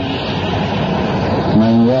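A loud, even rushing noise with no pitch fills a pause in a man's chanted Arabic recitation. About a second and a half in, his chanting voice comes back in.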